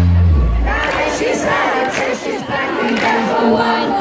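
A large concert crowd cheering. The band's music drops away about half a second in and leaves the crowd's many voices on their own.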